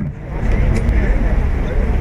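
Road traffic: a motor vehicle passing on the road, a steady low rumble of engine and tyres that swells shortly after the start.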